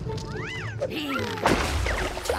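Cartoon soundtrack: background music under high, voice-like sliding calls from the animated characters, one rising and then falling early on, and a sharp hit about one and a half seconds in.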